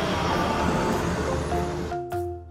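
Cartoon truck engine sound effect, a noisy rumble over cheerful background music, cutting off suddenly at the end.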